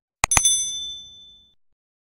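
Two quick mouse-click sound effects, then a notification-bell ding that rings and fades away over about a second.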